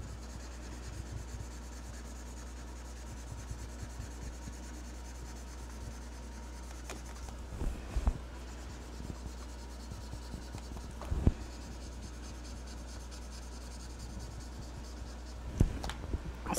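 Ohuhu alcohol marker rubbing and scratching on paper as a background is colored in, over a steady low hum. A few short knocks come around 8 and 11 seconds in and again near the end.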